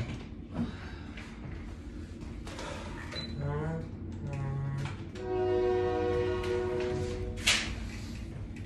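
A passing train: a steady low rumble, with a horn held on a chord of several notes for about two seconds near the end. Short wavering vocal sounds from a person come before the horn, and a brief sharp noise follows it.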